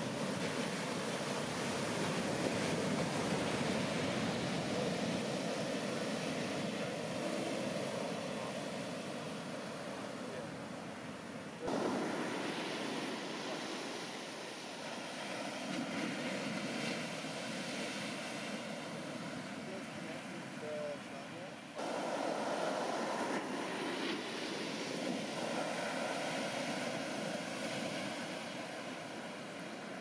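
Ocean surf: big shorebreak waves breaking and whitewater washing up the sand, a steady rush of noise that jumps in level about twelve seconds in and again about twenty-two seconds in.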